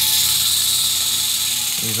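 Sandpaper held against the spinning shaft of a General Electric fan motor from a 1955–56 Fedders air conditioner, making a steady, loud hiss as it polishes surface rust off the shaft.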